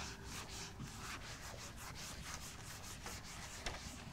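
Whiteboard eraser being rubbed back and forth across a whiteboard in repeated quick strokes, wiping off marker writing; fairly faint.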